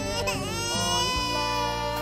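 A drawn-out wailing cry that rises at first and is then held, over background music.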